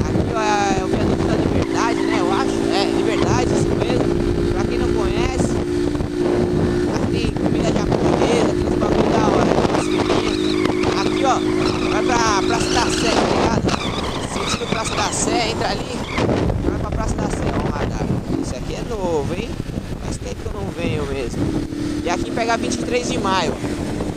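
Honda motorcycle engine running at a steady speed while riding in traffic, with wind rushing over the microphone. A steady engine note holds for about the first half, fades from the foreground, and returns near the end.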